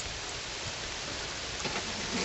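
Steady, even hiss of outdoor background noise, with no distinct events.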